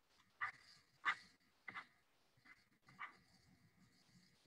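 A dog making faint, short sounds, five in all, about half a second to a second apart.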